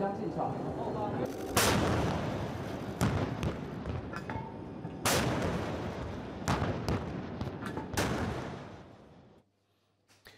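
Heavy naval guns firing during a warship exercise: five or six loud booms, one every one to two seconds, each ringing out over a steady rumble. The sound dies away shortly before the end.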